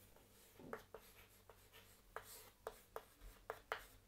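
Chalk writing on a chalkboard: a faint run of about ten short, separate taps and strokes as the chalk meets the board.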